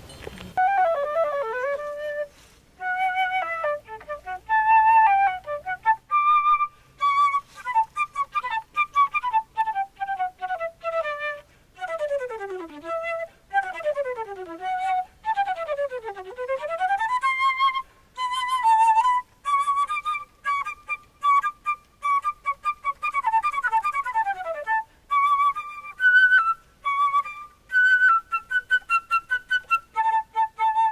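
Solo silver concert flute playing a lively melody full of fast runs that sweep down and back up, in short phrases broken by brief pauses.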